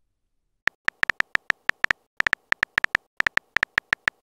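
Smartphone keyboard typing clicks: a quick run of short, sharp key-tap clicks in bursts as a text message is typed, starting a little under a second in.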